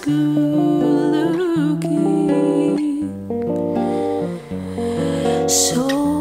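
Two acoustic guitars playing chords and a moving bass line. For about the first three seconds a woman's voice holds one long note with vibrato over them, and a breath in is heard near the end.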